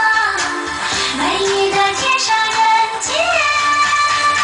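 Chinese-language pop song: a woman's voice singing long held notes with sliding pitch over a full backing track.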